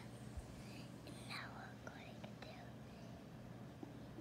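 Quiet room tone with faint whispering a little over a second in, and a few small clicks.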